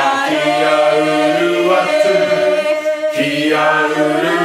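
Several voices chanting a Moriori karakia together, drawing out long sung vowels that bend slowly in pitch. A new phrase comes in about three seconds in.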